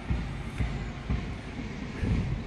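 Outdoor background noise: a steady hiss with an irregular low rumble.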